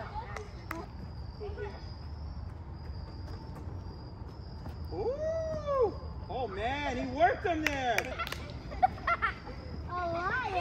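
Children's voices calling out on a sports field: one long rising-and-falling call about five seconds in, then several excited voices overlapping. A few sharp knocks come near the start and again towards the end, over a steady low rumble.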